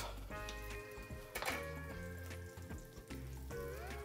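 Soft background music of held, sustained tones that shift to new notes a couple of times, with a single light knock about a second and a half in.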